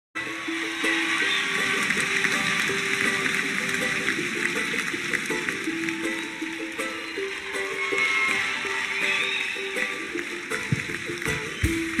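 Instrumental intro of a live song: strings play a melody of short and held notes over a steady, noisy wash of sound.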